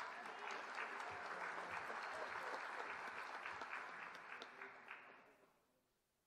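Audience applauding in a large hall, with a few voices mixed in, dying away about five seconds in.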